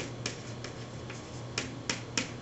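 Chalk writing on a chalkboard: a string of short, sharp taps and brief scratches, about one every half second, as a word is written out.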